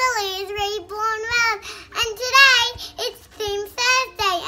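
A young girl singing in a high voice, a string of short held notes with a wavering pitch.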